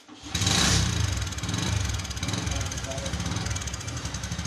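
A new motorcycle's engine starting about a third of a second in, loudest for the first half-second, then idling steadily with an even, rapid pulse.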